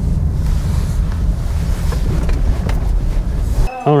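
Steady low rumble of a car's engine and tyres heard from inside the cabin while driving slowly, cutting off suddenly near the end.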